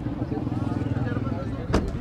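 A car door, on a 2012 Suzuki Cultus, shutting with a single sharp thump near the end, over a steady low rumble.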